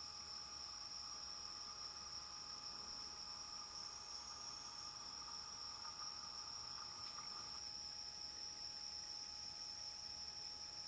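Faint, steady high-pitched chirring of night insects, with a lower buzzing band that stops about three-quarters of the way through.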